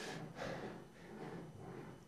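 Ball rolling back and forth in the dip at the bottom of a metal loop-the-loop track: a faint, uneven rolling rumble. The ball is rubbing on the track and losing energy as it settles at the bottom.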